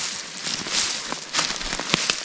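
Footsteps walking through dry fallen leaves on a forest floor: a continuous rustling crackle with a few louder crunches as each foot lands.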